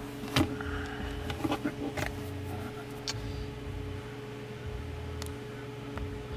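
A few light clicks and taps of a finger on a smartphone screen and handling of the phone, over a steady low electrical hum in a car cabin with the engine off.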